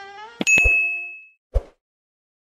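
A sharp click followed by a bright, ringing notification-bell ding that dies away over most of a second, then a single soft low thump near the end: sound effects of a subscribe-button and bell animation.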